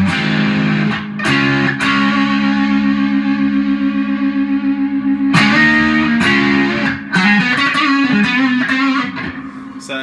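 Epiphone Les Paul Custom electric guitar played on its Gibson 496R neck humbucker, with a light Tube Screamer-style overdrive from a Fender Mustang amp. A short bluesy phrase, with one chord held ringing for about three seconds in the middle, then more notes that fade away near the end.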